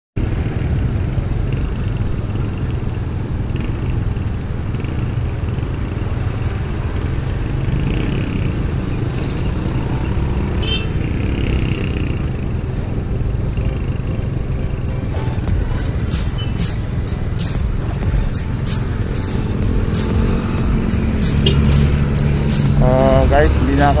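Steady low rumble of an idling KYMCO Super 8 125cc scooter and passing street traffic. Music with a quick, regular beat comes in about fifteen seconds in, and a man's voice starts near the end.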